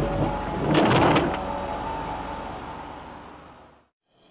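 Soundtrack sound effects: two whooshing noise swells about a second apart over a held musical tone. The sound then fades out to silence near the end.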